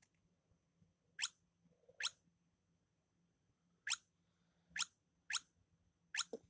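Five short, high squeaks, each sliding quickly down in pitch, spaced irregularly about a second apart.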